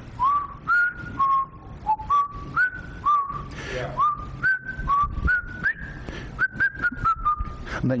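A man whistling a short tune: a quick run of clear notes, each sliding up onto a held pitch, stepping up and down in a melody.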